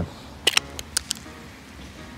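A quick cluster of five or six sharp clicks and taps between about half a second and one second in.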